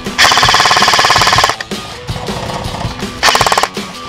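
Airsoft rifle firing on full auto in two rapid bursts: a long one just after the start and a short one near the end. Background music plays under it.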